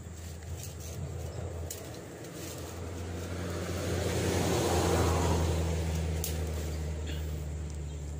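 Road traffic on a main road: a steady low engine hum, with a passing vehicle that swells to its loudest about five seconds in and then fades.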